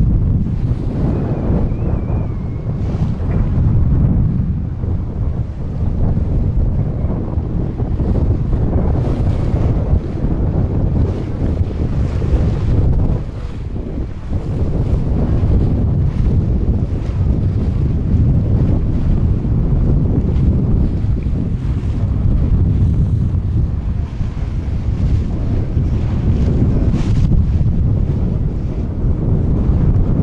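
Wind buffeting the microphone aboard a moving boat, a loud low rumble that rises and falls in gusts, over the wash of choppy water.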